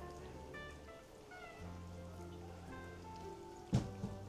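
Kittens mewing a few times over quiet background music, with one brief louder sound near the end.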